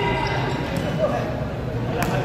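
Futsal ball thudding off players' feet and the court during play, with a sharper knock about a second in, among players' indistinct shouts.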